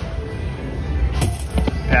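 Video slot machine spinning its reels to its own electronic music, with sharp clicks about a second in and again near the end as the reels land.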